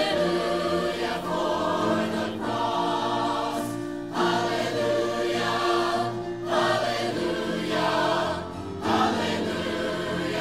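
Mixed choir of men and women singing a sacred song in long held phrases, each breaking off briefly before the next begins, every two seconds or so.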